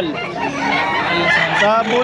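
Gamefowl roosters calling, mixed with people talking.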